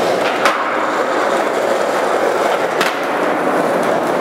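Skateboard wheels rolling steadily on a concrete floor, with two sharp clicks, one about half a second in and another near three seconds.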